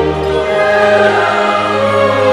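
Slow music with a choir singing long held notes over sustained low chords.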